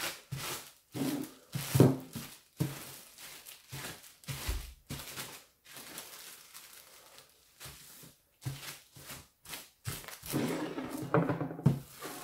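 A large clear plastic bag crinkling and rustling in irregular bursts as it is handled, lifted and smoothed flat by hand on a wooden table.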